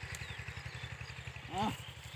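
A small engine running steadily in the background, a low drone with a fast, even pulse, and a brief voice-like call about one and a half seconds in.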